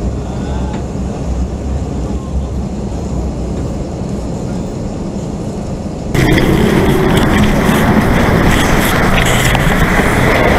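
Low, steady vehicle rumble. About six seconds in it cuts abruptly to a louder, harsher diesel engine running close by: a fuel tanker semi-truck.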